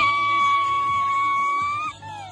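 One long, high, steady whistle, held for nearly two seconds, bending slightly up just before it stops.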